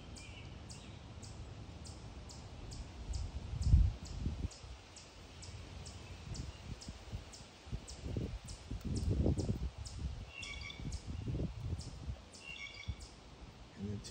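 Birds calling in woodland: a high, short call repeated about three times a second throughout, with brief chirps near the end. Low rumbles on the microphone come and go, loudest about four seconds in and again around eight to nine seconds.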